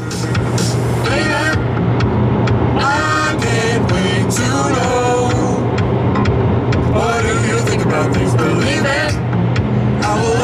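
Steady car cabin noise, the engine and road hum of a car being driven, with a song with singing playing over it.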